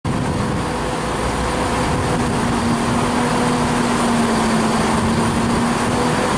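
Class 175 diesel multiple unit's underfloor Cummins diesel engines running as it pulls out of the station, a steady drone with a steady hum setting in about two seconds in.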